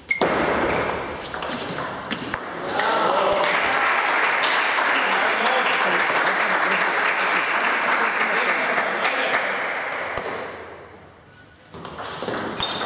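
A table tennis ball struck once with a sharp ping. It is followed by about ten seconds of loud, dense crowd noise of voices, cheering after the point, which fades out about eleven seconds in; a new ping comes near the end.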